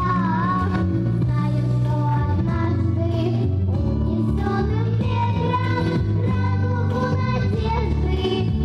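Young girls singing a melody into handheld microphones over loud instrumental accompaniment with a steady bass line.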